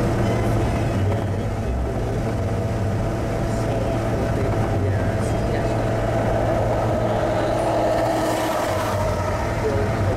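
Steady road and engine noise inside a car's cabin cruising at highway speed: a continuous low drone with tyre noise.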